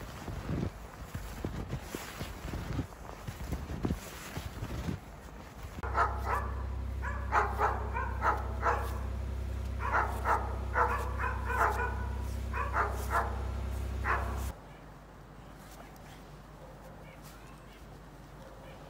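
Boots crunching and thudding through deep fresh snow for the first few seconds. Then a dog barks and yips over and over above a steady low rumble, and the barking stops about three seconds before the end.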